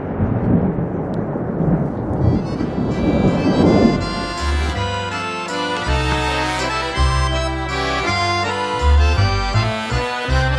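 Rain falling with a low rumble of thunder, giving way about four seconds in to background music with held chords and a bass line.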